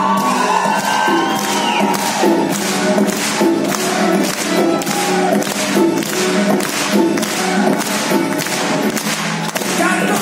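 Live concert music in a hall: sustained chords and singing over a steady beat of about two strokes a second that comes in about two seconds in.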